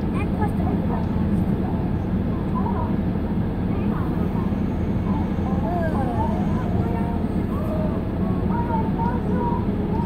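Steady low rumble of a stationary car's engine running, heard from inside the cabin, with faint voices talking in the background.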